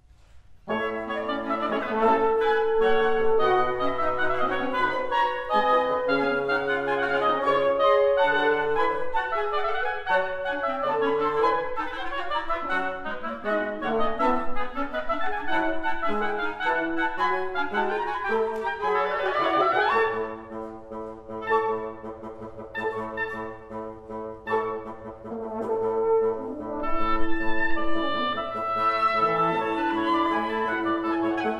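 Live wind quintet of flute, oboe, clarinet, French horn and bassoon playing a brisk, dance-like classical piece. The full ensemble comes in about a second in. About two-thirds of the way through, a rising run leads into a thinner, quieter passage, and the texture fills out again near the end.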